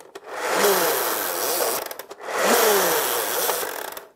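Nerf Zombie Strike Rev Reaper blaster worked twice by its slide handle: each stroke spins its geared saw-blade disc with a loud whirring rattle lasting about a second and a half.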